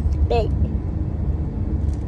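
Low, steady rumble of a car heard from inside the cabin, with one short word from a child about a third of a second in.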